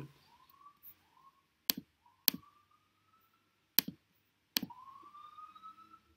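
Four sharp, separate clicks, with several faint short rising tones between them, the longest near the end.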